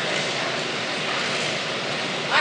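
Steady rushing noise with no clear tones or breaks.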